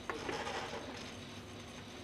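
Baxter robot arm being moved by hand during training: a single click right at the start, then faint, steady mechanical noise.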